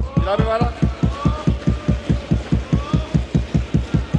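Many parliament members thumping their wooden desks in approval: a fast, steady beat of dull thumps, about six a second, with voices calling out over it.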